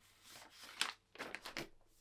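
Faint, brief rustles of paper wrapping as a paperback book is slid out of it, about a second in.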